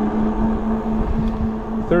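ENGWE L20 e-bike's electric motor whirring with a steady tone under throttle only at assist level three, at about 13 mph, over heavy wind noise on the microphone.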